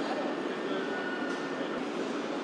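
Steady background din of an indoor factory hall, with an indistinct murmur of voices in it.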